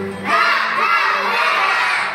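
A group of young children shouting together, starting about a third of a second in and lasting about a second and a half.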